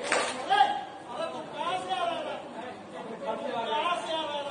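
Several people's voices talking over one another, with one short, sharp hit right at the start.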